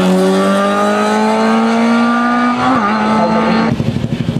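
Lada 2101 rally car's four-cylinder engine accelerating hard, its note climbing steadily in pitch, with a short break in the note near three seconds in. Just before the end the sound switches abruptly to a lower, pulsing engine note.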